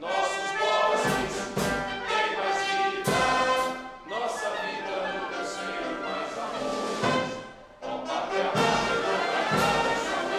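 An anthem played by an orchestra with brass, with the standing crowd singing along. The music pauses briefly between phrases about four and eight seconds in.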